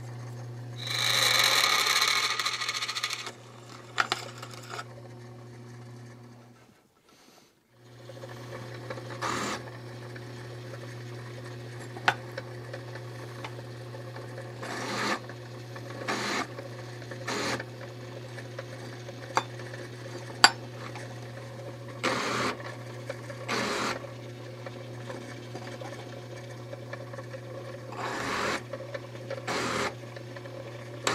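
Benchtop drill press running with a steady low motor hum while its bit drills a lanyard hole through the annealed tang of an old steel file. About a second in there is a loud, harsh cutting noise lasting about two seconds, then scattered clicks and knocks of the bit and workpiece. The hum drops out briefly about a quarter of the way through.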